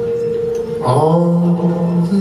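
A man singing long held notes with an acoustic guitar, live. About a second in he starts a new note that slides up into place and holds.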